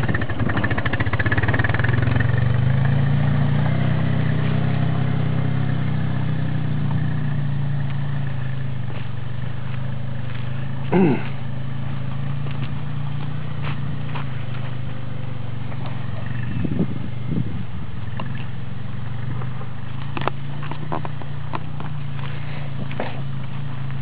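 Yamaha Grizzly 660 ATV's single-cylinder four-stroke engine running as the quad pulls away and rides off, a steady low hum, a little louder at first. A short laugh about eleven seconds in.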